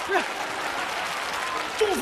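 Studio audience applauding steadily after a comic line; a voice comes back in near the end.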